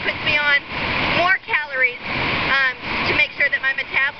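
A woman talking over the steady rush of river water.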